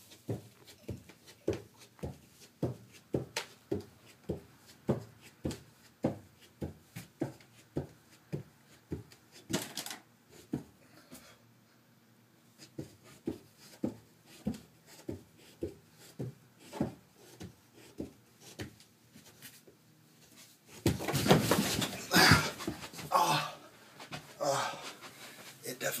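A man hanging from open stair treads breathes hard in quick, even breaths, about two a second, with a short pause midway. Near the end he falls onto the carpeted stairs: a loud, noisy few seconds of thumping and sliding.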